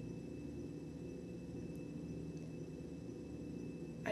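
Steady low hum and faint hiss of room tone in a pause between words, with no other sound.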